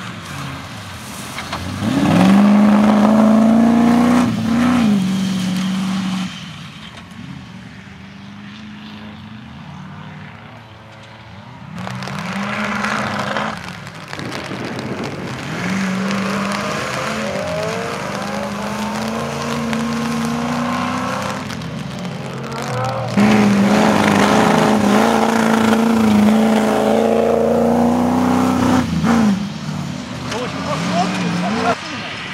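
Off-road competition 4x4s' Rover V8 engines revving hard through the gears, the pitch climbing and dropping with each shift, over several separate runs. It is quieter and more distant for a few seconds near the middle.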